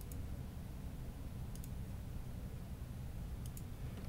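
A few faint computer mouse clicks: one about a second and a half in and two more close together near the end, over a low steady room hum.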